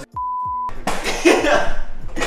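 A steady, high single-pitched beep lasting about half a second, dropped in over total silence, the kind of edit used to bleep out a word, followed by a man talking.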